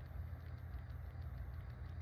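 A steady low hum with a faint hiss over it, unchanging throughout, with no distinct events.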